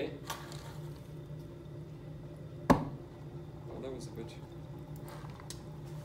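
A single sharp pop about two and a half seconds in: hydrogen given off by zinc in hydrochloric acid igniting at a lit match held to the flask's mouth, the pop test for hydrogen. A low steady room hum runs underneath.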